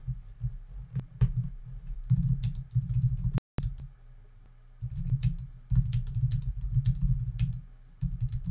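Typing on a computer keyboard in quick runs of keystrokes, clicks with dull thuds beneath them, easing off briefly about halfway through before a second run.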